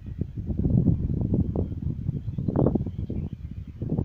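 Wind buffeting the microphone in irregular gusts, a low rumble with no clear hiss from the burning smoke grenade.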